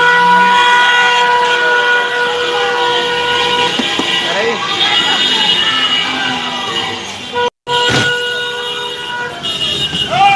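Car horns honking in a street motorcade, one horn holding a long steady note, with voices mixed in; the sound cuts out for an instant about three-quarters of the way through.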